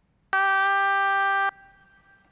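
A single sung note from the lead-vocal track played back at one unwavering pitch, the flat, robotic steadiness of heavy Melodyne pitch correction. It holds for about a second, cuts off abruptly and leaves a faint fading tail.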